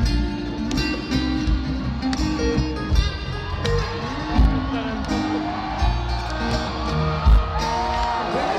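Live rock band music from the stage PA in a large hall, led by a guitar with a voice over it and crowd noise underneath.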